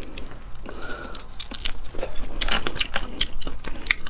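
Fingers peeling the shell off a sauced crayfish tail: irregular small wet clicks and crackles of shell, coming thicker in the second half.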